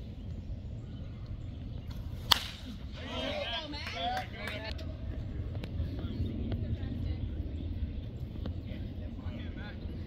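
A pitched baseball popping into the catcher's leather mitt: one sharp crack about two seconds in. Spectators shout briefly right after it.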